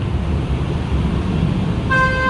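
Steady outdoor background noise with a low rumble. Right at the end, a vehicle horn begins one steady tone.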